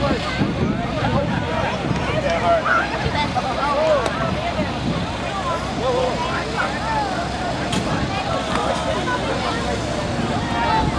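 Background chatter of many people talking at once, no single voice standing out, over a steady low rumble of wind on the microphone.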